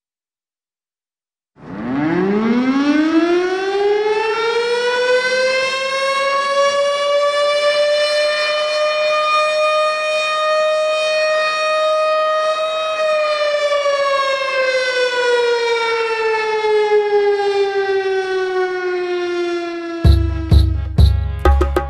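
A siren that winds up from a low pitch over about three seconds, holds one steady wail, then slowly winds down through the last seven seconds. It starts about a second and a half in.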